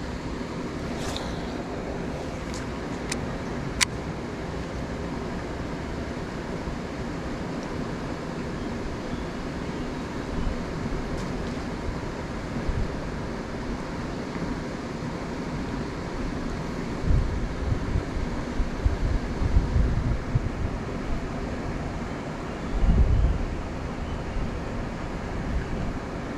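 Steady outdoor rushing noise of wind and flowing river water. There are a few sharp clicks in the first four seconds. Low gusts of wind buffet the microphone about two-thirds of the way in and again near the end.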